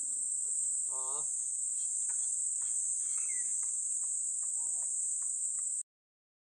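Steady high-pitched insect chorus. A short wavering call sounds about a second in, and faint scattered clicks run underneath. The sound cuts off suddenly just before the end.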